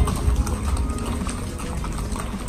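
Several horses walking on a paved street, their hooves clip-clopping irregularly over a steady low rumble.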